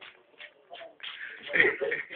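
A few soft knocks and shuffling noises for about a second, then people's voices talking loudly in an argument.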